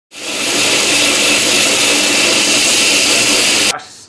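Loud workshop power tool running with a harsh, even hiss over a steady hum, cut off abruptly near the end.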